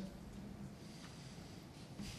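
Quiet room tone of a large auditorium with a low steady hum and a few faint rustles from the audience.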